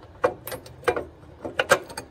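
Several sharp metallic clicks as a thumbscrew on the scanner-arm support is pushed by hand into the printer stand's metal channel, ready to be tightened so the part locks in place. The loudest clicks come near the end.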